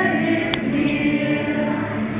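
A group of voices singing slowly together in a church, with long held notes.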